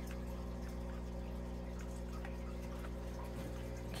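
Aquarium equipment running steadily: a constant low hum with water bubbling faintly underneath.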